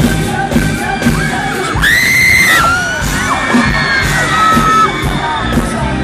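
Live band music with a steady drum beat, recorded from the crowd in an arena, with fans screaming and whooping over it. A loud, high held scream about two seconds in, then shorter rising and falling cries.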